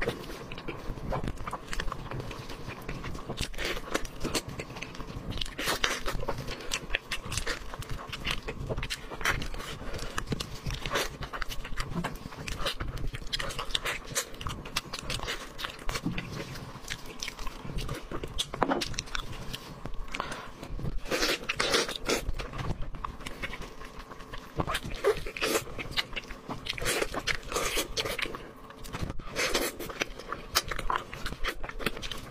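Close-miked eating of glazed pig's trotters: chewing, biting and lip smacks in a dense, irregular stream of small clicks and smacks.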